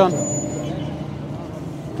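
Steady outdoor street background noise with a low hum and faint voices in the distance.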